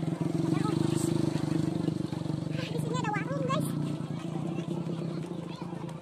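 A motorcycle engine running close by. It is loudest in the first couple of seconds and then eases off slightly.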